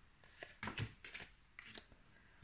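Oracle cards being dealt and laid down on a table: several short, soft slides and taps of card on card and on the tabletop, fairly quiet.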